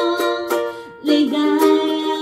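Ukulele strummed in a steady rhythm under a woman singing long held notes. Both break off briefly about a second in, then pick up again.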